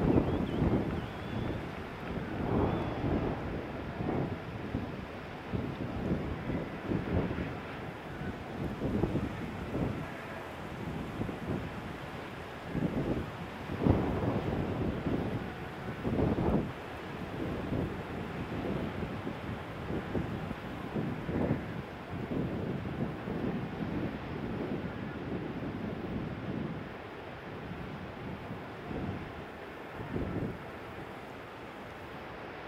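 Wind buffeting the microphone in irregular gusts over a steady wash of breaking surf.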